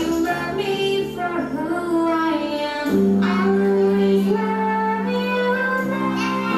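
A song playing, with children's and a woman's singing voices over backing music, holding long sung notes; a new phrase starts about three seconds in.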